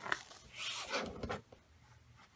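A laminated magnet sheet being peeled up off a sticky strong-grip cutting mat: a short crackle, then a rustling pull lasting about a second.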